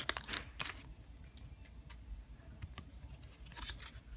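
Cards being pulled out of a foil Pokémon booster pack, with short crinkles of the wrapper and card rustles near the start and again near the end.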